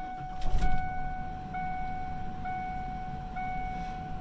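A 1995 Ford F-150's dashboard warning chime dinging in a steady repeat, a bit under once a second. Beneath it the truck's 351 Windsor 5.8-liter V8 starts with a brief loud burst about half a second in and then runs at a low idle.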